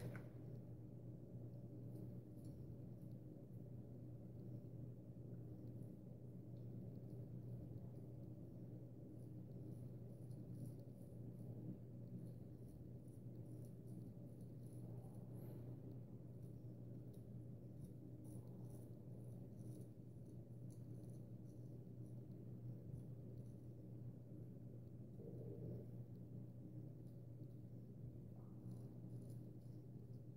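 Faint scraping of a Gold Dollar 66 carbon-steel straight razor cutting lathered chin stubble in short, repeated strokes, in clusters with pauses between, over a steady low hum.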